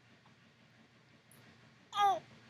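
Faint room tone, then near the end one short, loud vocal sound from a young baby, high and falling in pitch.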